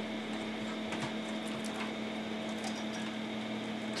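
Steady low room noise with a hum, with a few faint light ticks and rustles of computer power-supply cables being handled and moved by hand.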